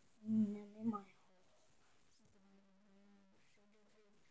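A child's voice humming without words: a short, louder hum that rises at the end in the first second, then a quieter steady hum held for about a second near the middle.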